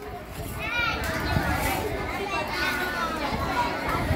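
Many children's voices chattering at once: a busy, overlapping babble of talk and calls from a large group of children.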